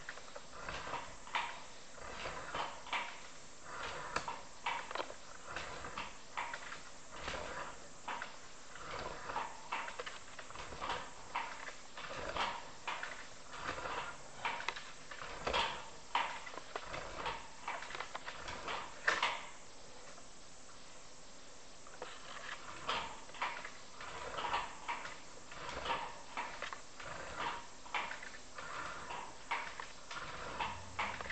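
Sewer inspection camera and its push cable knocking and clicking against the pipe as the camera is fed along the line, several irregular knocks a second with a short lull about twenty seconds in.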